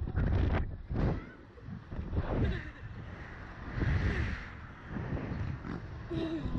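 Wind buffeting the microphone of a camera mounted on a swinging Slingshot ride capsule, a low rumble that surges in uneven gusts.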